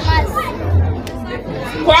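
A woman's voice through a microphone and loudspeaker, breaking off in a short pause and resuming near the end, with background chatter and music underneath.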